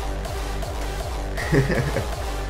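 Background music with a steady, repeating bass beat.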